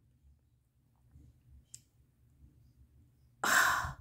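A woman's sigh: a single breathy exhale of about half a second near the end, after a few seconds of near silence broken by one faint click.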